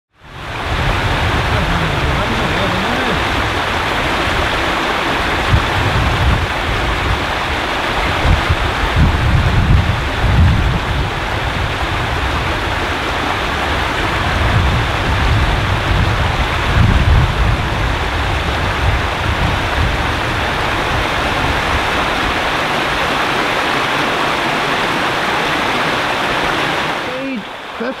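A small woodland stream running over rock ledges in shallow cascades: a steady rush of water with an uneven low rumble underneath. The rush fades in at the start and drops off shortly before the end.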